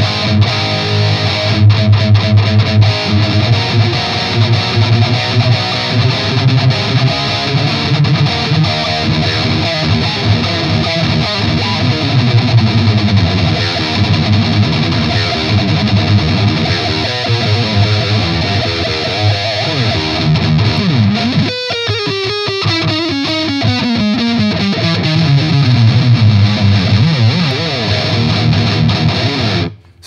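Heavily distorted electric guitar with EMG active pickups played through a Mesa/Boogie Dual Rectifier tube amp, driven riffing with clearly defined pick attacks: the thinner EMG sound lets the attacks cut through the amp's thick distortion. About two-thirds of the way through the playing breaks briefly, then a slow slide falls in pitch over several seconds and cuts off suddenly.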